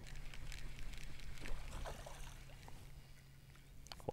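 Bow-mounted electric trolling motor humming low and steady, fading out near the end, with a few faint clicks over it.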